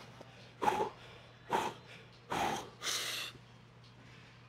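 A man breathing hard after straining through a heavy set of barbell curls: four forceful breaths in quick succession.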